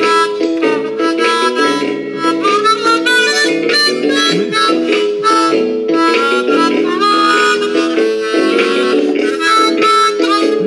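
Harmonica played with both hands cupped around it: a continuous run of chords and changing notes, with a note bent upward about seven seconds in.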